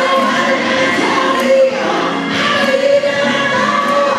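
Live gospel music: a woman sings lead into a microphone, holding long notes, with other voices singing along.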